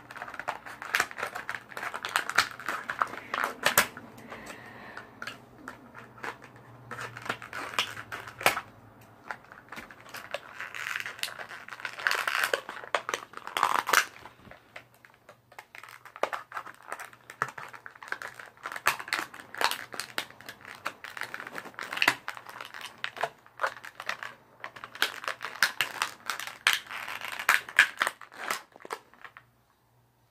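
Stiff plastic toy packaging crinkling and crackling as it is handled and pulled apart by hand to free a figure, in irregular bursts of small clicks and snaps.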